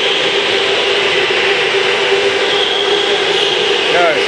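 Electric go-karts running on a concrete track: a steady motor whine with a higher whine that swells and fades about two to three seconds in, over tyre noise.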